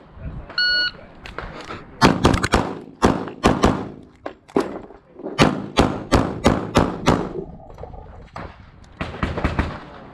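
Electronic shot timer's start beep, then a pistol fired in a rapid string of shots, many in quick pairs, over about five seconds, with a few more shots near the end.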